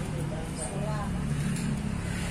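Faint voices over a steady low motor drone.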